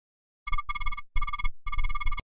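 A ringing, trilling electronic sound effect in three short bursts of about half a second each, separated by brief gaps.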